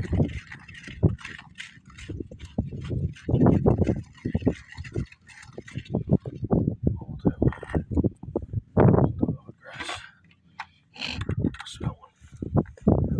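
Thick fish chum mixed with sand being stirred in a plastic bucket: irregular knocks and scrapes of the stirrer against the bucket, coming in uneven bursts.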